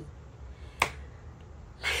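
A single sharp finger snap, a little under a second in.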